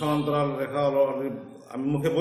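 A man speaking in long, drawn-out phrases, with a brief pause near the end.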